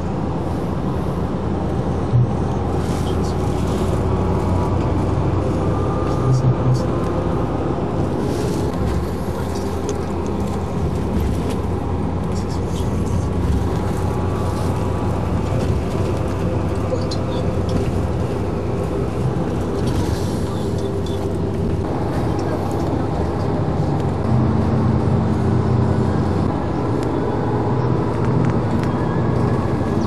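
Steady drone of a moving vehicle's engine and road noise, heard from inside, with indistinct voices talking over it.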